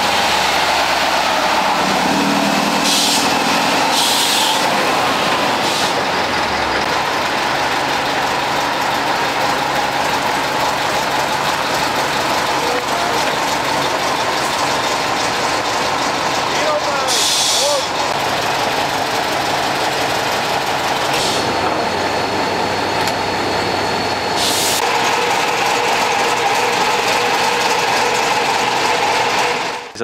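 Heavy diesel fire trucks, among them a Tatra fire tanker, running and driving past, a loud steady engine noise with a few short hisses of air.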